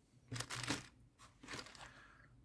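Clear plastic bag of small parts crinkling as it is handled, in two short bursts.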